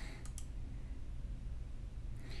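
Quiet small-room tone with a steady low hum, and a faint double click about a third of a second in.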